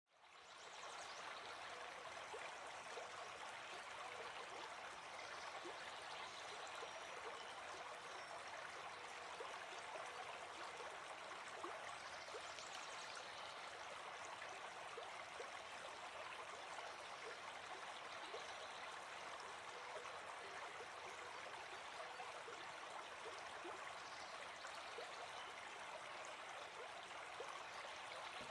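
Faint, steady sound of a flowing stream, water running and trickling, fading in at the very start.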